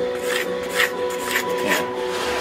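Pencil scratching on plywood in about four short strokes, over a steady hum.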